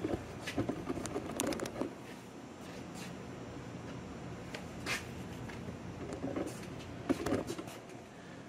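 Faint rustling with a few light clicks and taps scattered through, handling noise as the camera is moved around under the locomotive.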